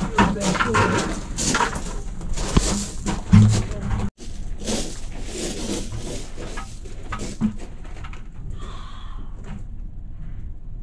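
Loose gravel crunching and shifting as someone moves across a gravel crawl-space floor, with irregular scrapes that are busiest in the first few seconds and lighter afterwards.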